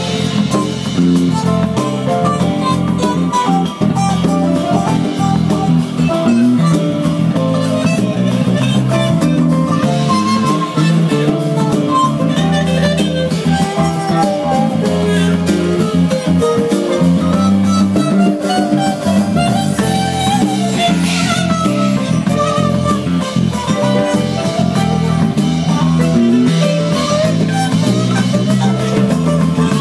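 Live band playing an instrumental number, led by electric guitar over keyboard, bass guitar, congas and drum kit.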